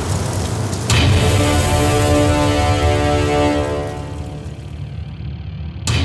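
Dark trailer score and sound design: a sharp impact hit about a second in, then a held, ominous chord over a low rumble that slowly fades, and a second impact hit just before the end.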